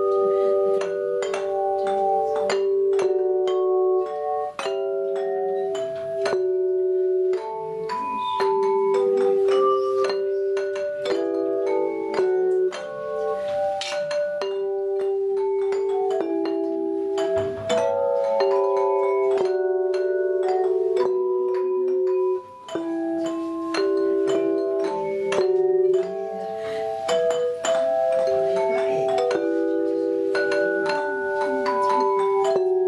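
A team of bell plates, hand-held tuned metal plates rung by clappers, playing a Christmas carol in chords: many struck notes ringing and overlapping, each cut short on the beat, with two brief breaks about two-thirds of the way through.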